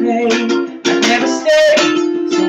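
Ukulele strummed in a rhythmic pattern of chords, with a man's voice singing along.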